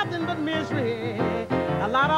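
Live blues: piano and upright bass under a wordless melodic line that bends and wavers in pitch.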